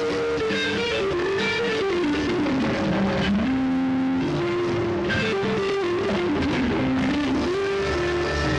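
Live rock band playing, with an electric guitar carrying a melodic line that steps down in pitch through the middle and climbs back up near the end, over drums.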